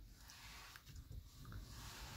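Near silence: the faint room tone of a car's cabin.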